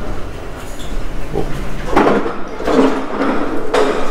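Lift arriving and its doors sliding open: a rumbling, rattling run starting about halfway in and ending with a click near the end.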